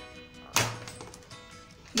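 A single sharp plastic snap about half a second in, as the clip-on plastic back stand comes off a small tabletop mirror. Faint background music plays under it.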